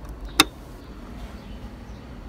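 A single sharp click about half a second in, over a low steady rumble.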